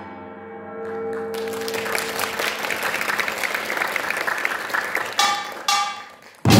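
A samulnori ensemble's gongs and drums ringing away after a loud closing stroke, overtaken about a second in by audience applause. Near the end two sharp strokes on a small metal gong cut through the clapping.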